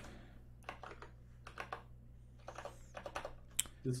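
Typing on a computer keyboard: short runs of quiet key clicks, in two groups with a brief pause between.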